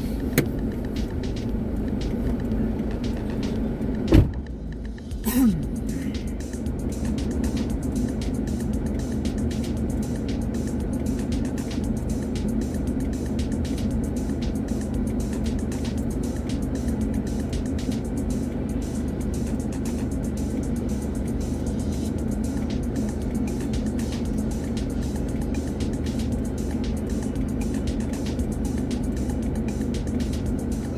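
A stopped car's engine idling steadily, a low even hum. There is a sharp knock about four seconds in and a short louder sound about a second later.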